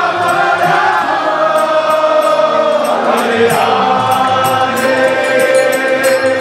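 Kirtan: voices chanting a devotional mantra over a harmonium's held chords, with hand drums and small percussion keeping a steady beat.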